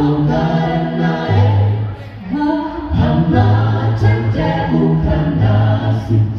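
Mixed male and female a cappella gospel group singing in close harmony through stage microphones, with a bass voice holding low notes under sustained chords. The sound dips briefly about two seconds in, then the chords swell again.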